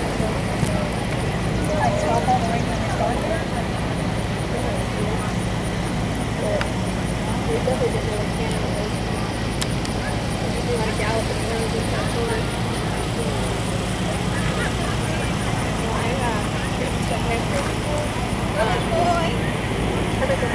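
Indistinct chatter of distant voices over a steady low outdoor hum, with no clear words.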